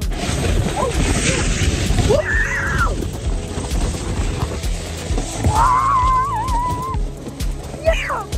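People screaming while sliding down a snow-tubing run: a short rising-and-falling cry about two seconds in, then a long wavering high yell, over a rushing hiss of the slide in the first few seconds.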